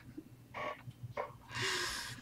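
A person breathing quietly into a close microphone: a couple of soft breaths or stifled chuckles, then an audible inhale near the end.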